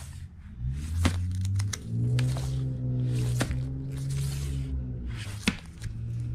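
Vinyl LPs in plastic sleeves being flipped through in a crate: several short sliding swishes of sleeve against sleeve with small sharp knocks. Low, slow music with held notes plays underneath.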